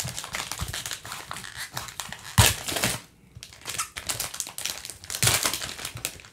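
Plastic trading-card pack wrapper being torn open and crinkled in gloved hands, with two louder crackling bursts, one about two and a half seconds in and one about five seconds in.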